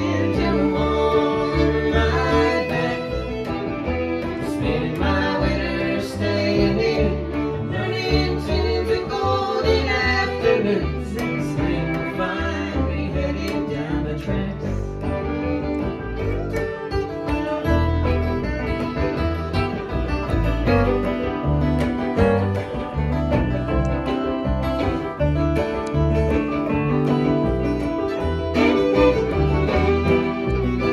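A live acoustic string band of fiddle, banjo, acoustic guitar and upright double bass plays an old-time folk tune with a steady beat. The bowed fiddle stands out over the plucked banjo and guitar.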